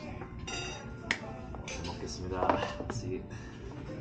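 Metal spoon and chopsticks clinking against dishes on a restaurant table: a ringing clink about half a second in, then a sharp click about a second in, over background music.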